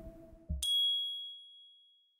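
Channel logo sting: a short low thump about half a second in, then a single bright ding that rings on one high note and fades away over about a second and a half.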